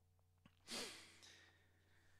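Near silence, broken about a second in by one short breathy exhale, a sigh, from the singer.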